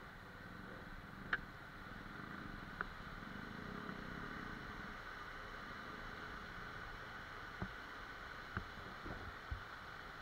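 A fast mountain stream rushing over boulders, a steady hiss of water, with a low rumble that swells and fades in the first half and a few short sharp clicks.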